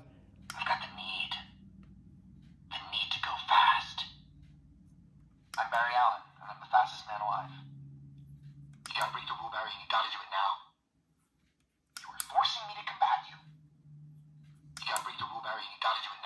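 Spin Master 12-inch electronic Speed Force Flash action figure playing its recorded voice lines through its small built-in speaker after its button is pressed: about six short, thin, tinny phrases with pauses between them, over a low steady hum.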